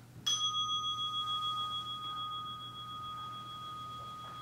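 A meditation bell struck once about a quarter second in, then ringing on with a clear, steady tone that slowly fades. It marks the close of the 30-minute sitting.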